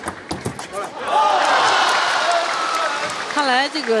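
Table tennis rally: several quick clicks of the ball off bats and table, then from about a second in a loud burst of crowd cheering and applause as the point is won.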